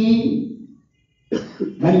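A man's chanted voice trails off into a brief silence, then a single sharp cough about halfway through, followed by a smaller throat-clearing sound before his voice resumes near the end.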